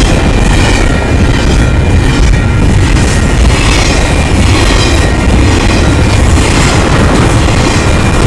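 Double-stack intermodal train's container well cars passing close by at speed: a steady, loud rumble of wheels on rail.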